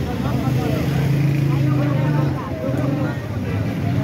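Busy street-market background: several people talking over the steady low drone of a vehicle engine. The drone is loudest a second or two in, then fades.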